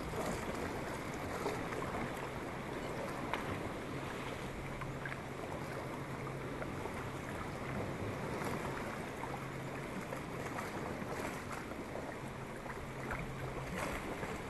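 Tandem sit-on-top kayak being paddled: paddle blades dipping and dripping and water moving along the plastic hull, a steady wash of sound with small scattered splashes. A faint low hum comes and goes.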